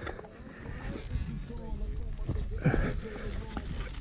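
Indistinct, muffled voices over a low dirt-bike engine rumble.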